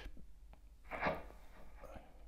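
Quiet room tone with a steady low hum, a brief soft sound about a second in and a faint click near the end.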